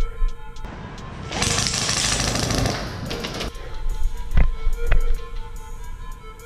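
A burst of rapid airsoft gunfire lasting about three seconds, followed by two sharp knocks, over background music.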